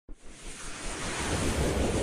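Whoosh sound effect of a logo intro sting: a rush of noise over a low rumble, swelling steadily louder.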